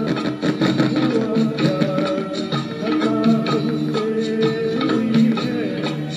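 Karaoke: a man sings a Hindi film song into a handheld microphone over a recorded backing track, holding and sliding between long sung notes.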